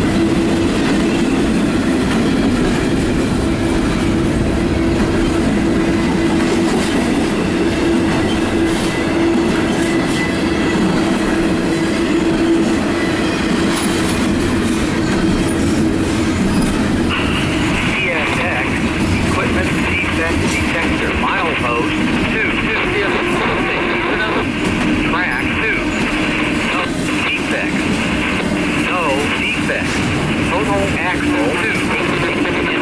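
CSX double-stack intermodal freight train's container well cars rolling past close by: a loud, steady rumble and rattle of wheels on rail with a steady low tone. A little past halfway a brighter, higher hiss and squeal from the wheels joins in.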